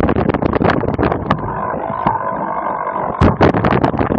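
Cyclocross bike and its mounted camera rattling over rough dirt and grass: dense jolting clatter, easing into a smoother, steadier hum in the middle, then a few loud thumps about three seconds in as the ride gets rough again.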